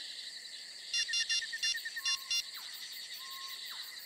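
Crickets chirping in a steady night chorus. Faint electronic background-score tones run over it: a cluster of short high beeps about a second in and two brief falling sweeps near the end.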